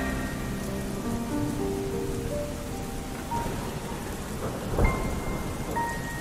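Steady rain with a low rumble of thunder about five seconds in, under a few soft, held guitar notes in a quiet break of the song.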